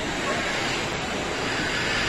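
Steady rushing noise of rain and running water.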